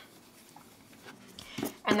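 Near silence: room tone for over a second, then a brief faint high-pitched sound and a short vocal sound running into speech near the end.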